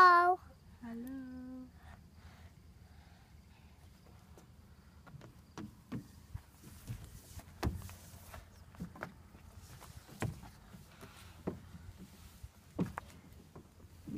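Scattered light knocks and taps as a small child climbs and crawls over a playground climbing frame's perforated metal deck and plastic panels, with a short hummed note from the child about a second in.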